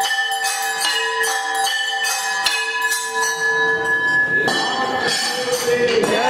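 Temple aarti bells struck in quick succession, about three strokes a second, each leaving a ringing metallic tone. The strokes die away about four and a half seconds in and a murmur of voices takes over.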